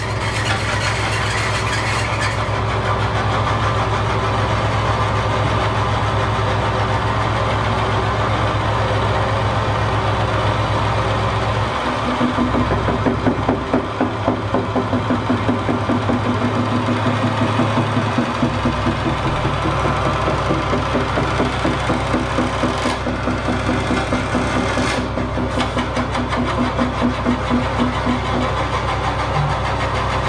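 Live experimental drone music: a dense, steady droning texture of held tones and noise. A throbbing, pulsing layer joins about twelve seconds in and drops out near the end.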